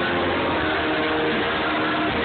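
Live rock band playing full out, with guitars, keyboard and drums and held notes over a dense wash, picked up loud and muddy by a phone's microphone in the crowd.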